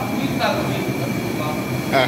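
Steady rushing roar of an LPG gas burner firing under a large cooking pot.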